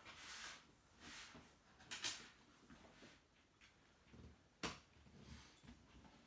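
Faint rustling of canvas tent fabric being handled and unfolded, in a few short swells, with a sharp click about four and a half seconds in.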